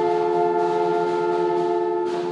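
High school band holding one long sustained chord, with brass prominent.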